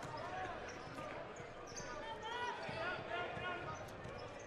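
Basketball being dribbled on a hardwood court with sneakers squeaking, over a steady murmur of crowd voices in an arena.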